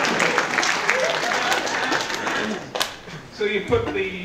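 A large audience laughing and clapping. It dies away about three seconds in, and a man's voice starts near the end.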